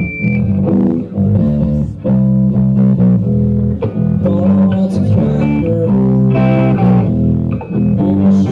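A live rock band playing loud, electric guitar and bass guitar to the fore.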